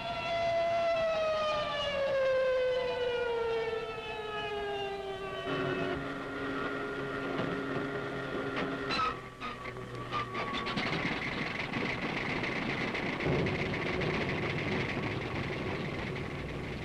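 An air-raid alarm siren wails and its pitch slides steadily down for the first five seconds or so. A steadier, lower siren tone follows. From about ten seconds in, aircraft engines take over with a steady running noise.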